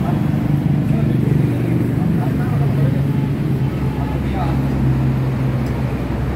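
Dongfeng S1115 single-cylinder diesel engine running steadily on its first test run.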